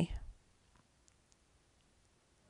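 A few faint, scattered clicks from the pen or mouse input as letters are drawn on a computer, in an otherwise near-silent pause; the end of a spoken word is heard right at the start.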